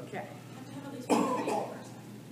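A person coughing: one short, loud cough about a second in, in a room with people talking.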